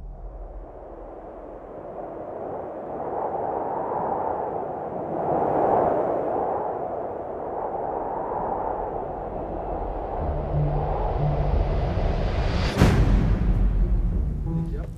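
Cinematic soundtrack sound design: a swelling, whooshing rush of noise that peaks and eases. Low bass notes come in after about ten seconds, and a sharp impact hit lands near the end.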